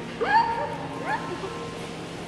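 A woman's high-pitched squealing giggles: two short rising squeals, one just after the start and one about a second in.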